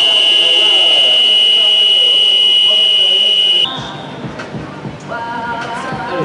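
Arena game buzzer giving one long, steady, high-pitched tone of nearly four seconds that cuts off sharply. Quieter hall noise with voices follows.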